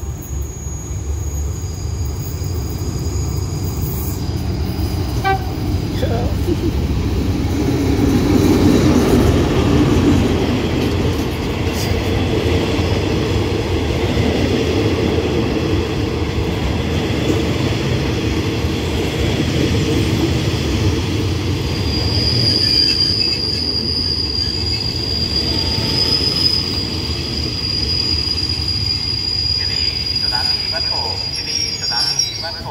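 Diesel-electric passenger train arriving, its locomotive and coaches rolling slowly past with a loud, steady rumble of wheels on rail, loudest about nine seconds in. From about two-thirds of the way through, a high steady squeal of wheels and brakes sets in as the train slows to stop at the platform.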